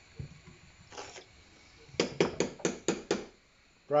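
A quick run of about six sharp clicks from a metal spoon knocking against the rim of a saucepan, after a softer knock about a second earlier.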